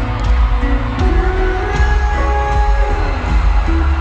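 Live pop band playing an instrumental passage: guitars holding sustained notes over a heavy bass, with one note sliding down about three-quarters of the way through.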